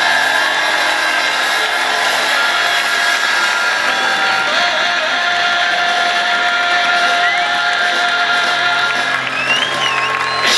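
Live band music with long held notes, and a concert crowd cheering and whooping over it, with a few rising whoops near the end.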